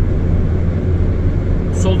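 Steady low rumble of tyre and engine noise inside a car cruising on a motorway.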